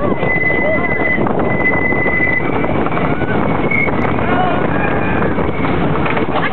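Wooden roller coaster train rolling and clattering over its track, with a thin steady high squeal for the first couple of seconds that carries on faintly afterwards.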